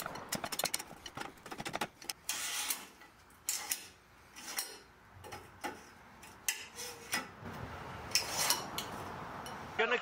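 Steel roof-rack extension tubes being worked in and out of the crossbars: metallic clicks and clacks as the spring push-button pins snap into the drilled holes, with short scrapes of tube sliding in tube. The clicks come thick and fast in the first two seconds, then more scattered.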